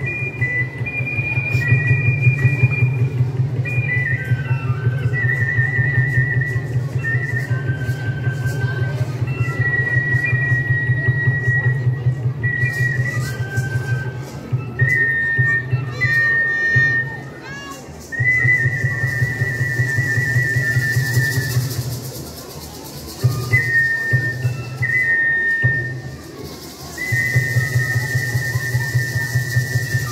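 Traditional quetzal-dance music: a high flute melody of long held notes over a small drum beaten in a fast, steady roll, the drum stopping briefly a few times in the second half.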